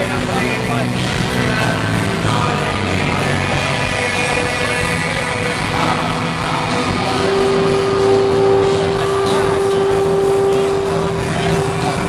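Rock band playing live through a theater PA, heard from within the audience. A single note is held for about five seconds in the second half.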